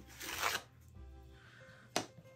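Soft background music plays throughout. About half a second in, a paper towel gives a brief rustle as it is handled, and a sharp tap comes at the very end.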